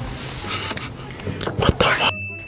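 People whispering, with a few short clicks and rustles near the end.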